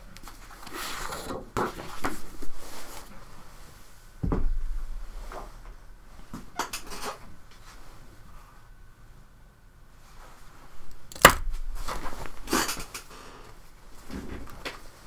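A sheet of paper and art supplies being handled on a tabletop: scattered rustles and knocks. The loudest is a knock about four seconds in, and there is a sharp click about eleven seconds in.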